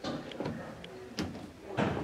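A few short knocks and clatters, about four over two seconds.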